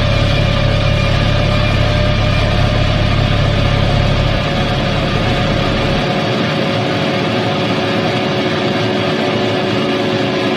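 Rock band recording without vocals: a sustained, droning chord held over a dense wash of sound. The heavy bass drops away about four seconds in and is gone by about six seconds.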